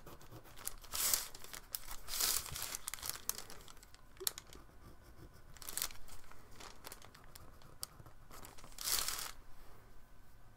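Hands rubbing and pressing blue painter's tape down along the edges of a sheet of watercolour paper on a board, in about four short swishes a couple of seconds apart, with a few light clicks between.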